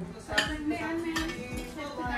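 Plates clinking as they are handled on a kitchen counter, with one sharp clink about half a second in that rings briefly. Background music with a steady beat plays underneath.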